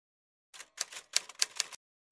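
Typewriter keys clacking: a quick run of about seven strikes over a little more than a second, starting about half a second in.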